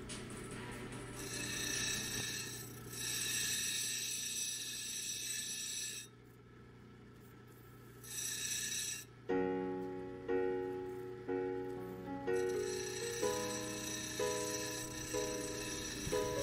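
Wet lapidary grinding wheel running with a steady motor hum while an opal is ground against it, giving a hiss that drops away briefly about six seconds in. From about nine seconds in, piano-like keyboard music plays over it.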